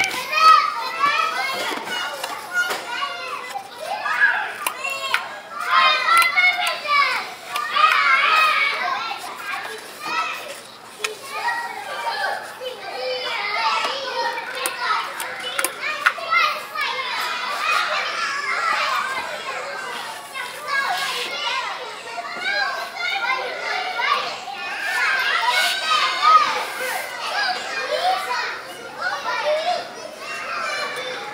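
Several children's voices overlapping throughout: shouting, calling and chattering as they play.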